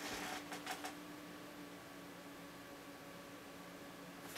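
Faint, steady hum of a desktop PC's fans running while the overclocked machine boots, with a few light ticks in the first second.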